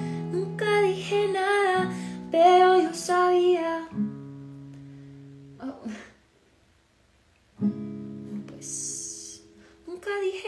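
A woman singing to her own strummed acoustic guitar, then letting a chord ring out and fade. After a short silent pause, she strikes another chord that rings on until near the end.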